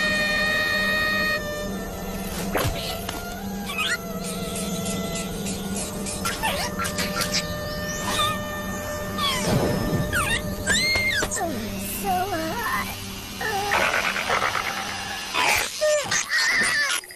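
Animated cartoon soundtrack: background music mixed with the characters' wordless vocal noises and comic sound effects, with pitch glides and short clicks.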